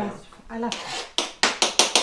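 Knife chopping on a plastic cutting board: about five quick, sharp strikes in the last second.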